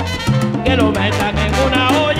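Live salsa band playing an instrumental passage: a stepping bass line under steady percussion, with a melodic line entering about two-thirds of a second in.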